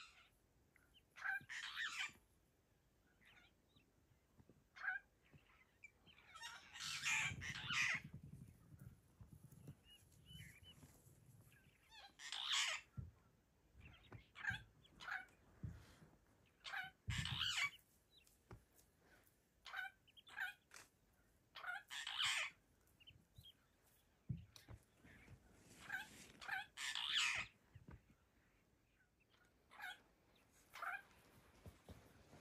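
Bird calls in short, harsh bursts, a loud one about every five seconds with fainter calls in between.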